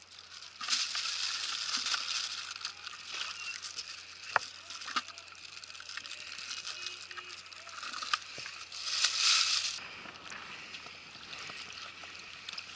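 Sea cucumbers tumbling out of a fish trap into a bucket with a pattering rush, in two spells (about a second in and again near nine seconds), with a few single knocks between.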